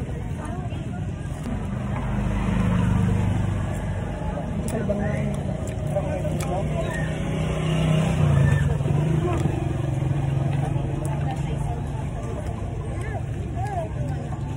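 Outdoor background of a low rumble from passing motor vehicles, swelling twice, with distant voices chattering.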